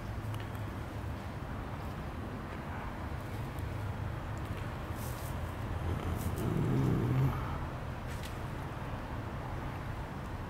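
Steady low outdoor background rumble that swells for about a second, six to seven seconds in, with a few faint clicks.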